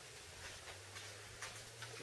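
Quiet background with a faint steady low hum and a few faint, scattered ticks.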